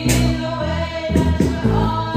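A girl singing a pop song through a handheld microphone over amplified instrumental accompaniment with steady bass notes.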